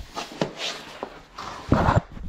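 A few light knocks and scuffs on a laminate plank floor as someone shifts about on it, ending in a louder rustle of the camera being handled.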